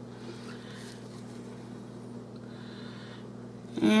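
Quiet room tone with a steady low hum and no distinct handling sounds; a woman's voice starts again just before the end.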